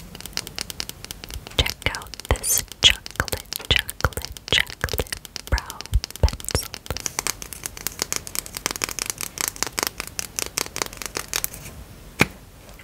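Long fingernails tapping fast on plastic makeup pencils: rapid, irregular clicks, many a second.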